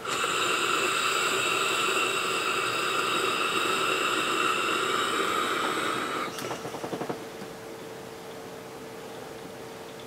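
Innokin Coolfire 4 Plus vape with a top-airflow tank being drawn on: a steady hiss of air and vapor for about six seconds that ends with a few quick crackles, followed by a softer, fainter hiss.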